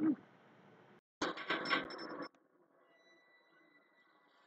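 A short voice-like sound at the start, then about a second of rapid, dense clicking and clattering like a mechanism. After that it is nearly quiet except for a faint steady high tone.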